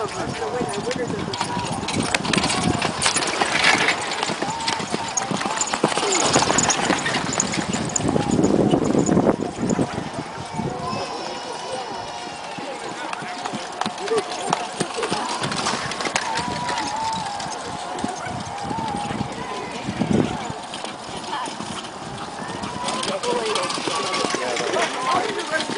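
Hoofbeats of driving ponies trotting on a sand arena as pony-drawn carriages pass one after another, with people talking over them.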